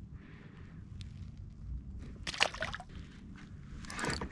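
Water sloshing and a short splash a little over two seconds in as a small bass is let go at the surface beside a kayak.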